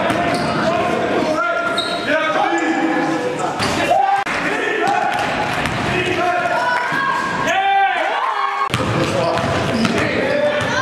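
Live sound of a basketball game in a large gym: a ball bouncing on the hardwood court, sneakers squeaking in short pitched squeals, and players' voices echoing in the hall.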